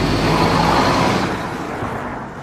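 A rushing noise with a low hum underneath that swells to its loudest about a second in and then slowly fades away.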